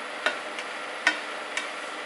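Sliced onions and chopped red chilli sizzling steadily in a frying pan, stirred with a spatula that knocks against the pan three times.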